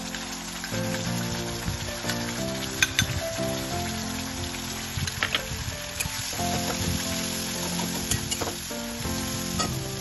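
Wet spice paste sizzling as it is fried in hot mustard oil in a kadhai, stirred with a metal spatula that clinks against the pan a few times.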